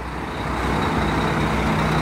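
Diesel engine of a Mercedes-Benz garbage truck running as it rolls slowly closer, a steady low hum that grows a little louder.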